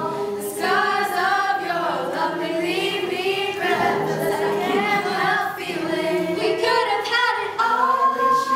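A class of teenagers singing together as a choir, unaccompanied, with sustained sung notes and no instrumental beat.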